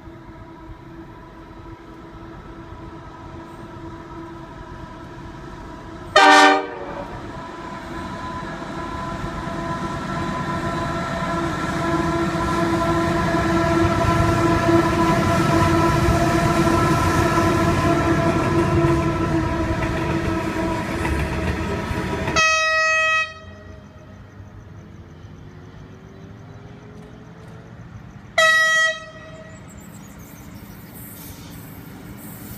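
Diesel locomotive hauling a loaded coal train approaches, gives one short horn blast about six seconds in, then grows steadily louder with engine drone and wheel noise as it and its coal hoppers pass. After an abrupt cut near the end, an approaching passenger train sounds two short horn toots.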